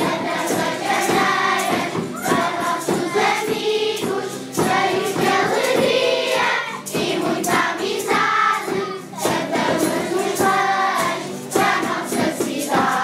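A group of young children singing janeiras, traditional Portuguese New Year carols, together as a choir.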